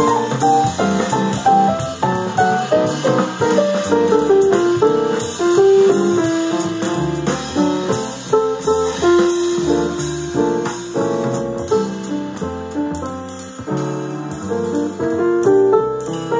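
Jazz piano improvising a quick, busy run of single-note lines and chords over a recorded bass and drums backing track.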